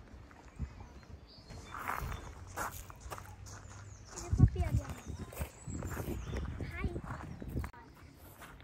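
Indistinct voices of people chatting, with footsteps crunching on a gravel path and one louder knock a little past halfway.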